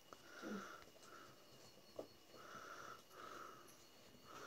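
Near silence, with faint, soft breathy sounds repeating about every half second to second, and a single faint click about two seconds in.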